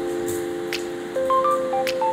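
Background music: held electronic notes that change about a second in, with a few sharp clicking percussion hits.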